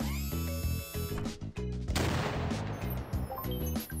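A cartoon cannon shot about halfway through: a sudden noisy blast that fades over about a second, over steady background music.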